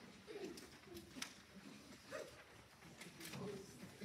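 Hushed auditorium just before a choir begins: faint wavering voice sounds from the audience, with a few soft clicks and rustles.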